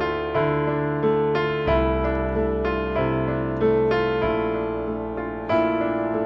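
Piano on a digital keyboard playing a slow minor-key theme. The left hand rocks between a bass note and its octave under a sustained right-hand melody, and the bass moves down through the chords of the Andalusian cadence in D minor.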